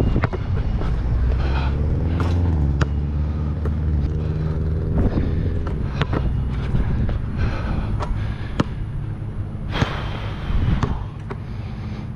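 Wind buffeting a head-mounted camera's microphone with a steady low rumble, while a passing vehicle's engine drones and rises in pitch over the first seconds, then fades about five seconds in. Scattered sharp knocks of a basketball bouncing on the hard court come through the wind, with a louder gust about ten seconds in.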